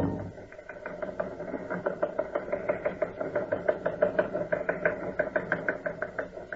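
A fast, regular mechanical clicking, about four to five clicks a second, as a radio-drama sound effect of machinery.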